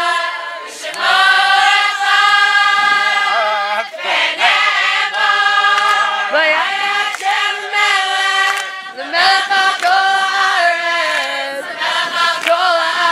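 A group of young women singing together, holding long notes in phrases of a few seconds with brief breaks between them.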